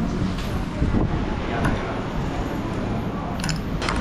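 Steady background din of a busy eatery, a low rumble with faint voices, with a few short sharp clicks about one and a half seconds in and again near the end as crab and tableware are handled.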